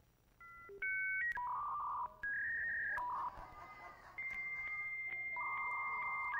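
Recording of a dial-up modem connecting: a quick run of touch-tone dialing beeps, then steady handshake tones that jump to a new pitch every second or so.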